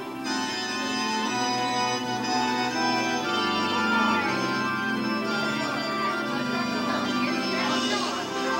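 Recorded organ music played as the wedding recessional, a slow run of sustained chords.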